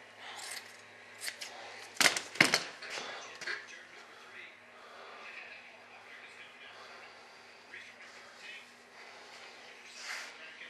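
Gloved hands laying and smoothing fiberglass cloth over a foam tail part: a few sharp crinkles and taps, the loudest two about two seconds in, then soft rustling, over a faint steady hum.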